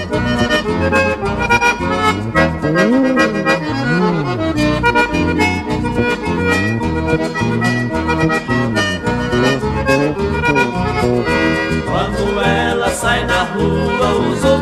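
Instrumental break in a 1980s Brazilian sertanejo song: accordion carrying the melody over a moving bass line and a steady drum beat.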